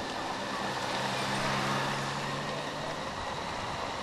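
Race ambience under the broadcast: a steady motor-vehicle engine hum over a wash of outdoor noise, the hum fading a little under three seconds in.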